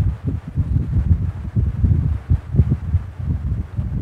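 Low, uneven rumbling noise on the microphone, with irregular short muffled bumps and no speech.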